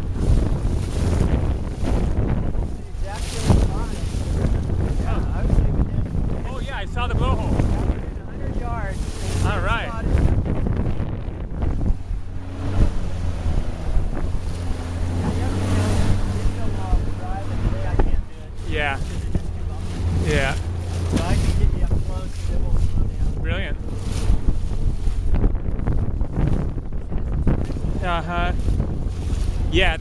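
Motorboat engine running steadily under way, with wind buffeting the microphone and water rushing past the hull.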